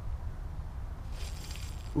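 Steady low rumble on the body-worn camera's microphone, with a short rustling hiss lasting under a second near the end as the rod and spinning reel are handled.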